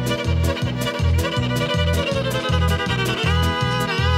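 Live country-swing instrumental: a fiddle carries the melody with a long downward slide and then a quick upward slide near the end, over acoustic guitar accompaniment with a steady bouncing bass of about two to three notes a second.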